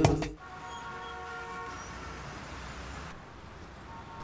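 Music cuts off just after the start, leaving street traffic ambience: a steady hum of traffic with a faint vehicle horn held for about a second.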